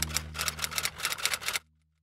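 Typing sound effect: a quick run of keystroke clicks, about seven a second, that stops about one and a half seconds in, over the fading tail of a low music chord.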